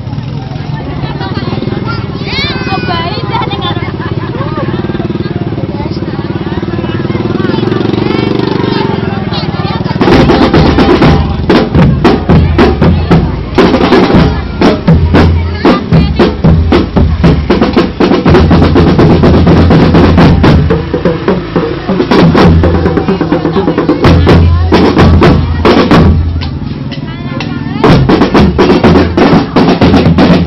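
For the first ten seconds, people in a crowd talk. Then, about ten seconds in, a marching band's drum line starts playing loud and fast, with bass drums and snare drums in a driving rhythm. The drums drop away for a moment near the end, then come back in.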